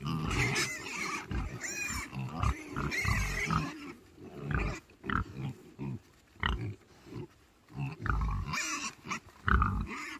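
A group of pigs, a woolly-coated sow with piglets and young pigs, grunting and squealing close up. The first few seconds are a dense jumble of squeals over grunts; after that come short, separate grunts with gaps between them, loudest again near the end.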